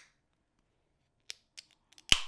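Near silence broken by a few faint clicks and taps from handling an aluminium sparkling-water can: one about a second in and a few close together near the end, as the pull tab is fingered before the can is opened.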